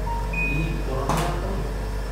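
A camera shutter click with a studio strobe firing, about a second in, one in a series of shots roughly a second apart. A short high beep comes just before it, over faint background voices.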